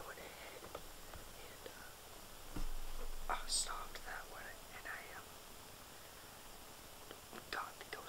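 A person whispering in short phrases, with a sharp 's' hiss about three and a half seconds in and a pause of a couple of seconds near the end.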